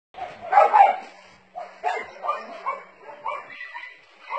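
Dogs barking: two louder barks close together about half a second in, then a string of shorter barks roughly two a second.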